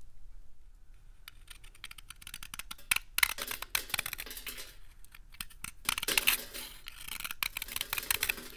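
Utility-knife blade cutting into a brittle bar, with crisp crackling and scraping as it crumbles. Scattered light ticks lead into two long crackling cuts, each about a second and a half, starting about three and about six seconds in.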